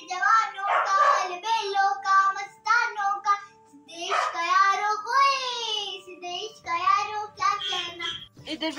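A young girl singing solo and unaccompanied. Her voice holds and glides through notes, with a short break a little before the middle.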